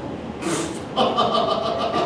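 A performer's vocal sound effect: a short breathy hiss, then a steady buzzing drone from about a second in, imitating a running engine.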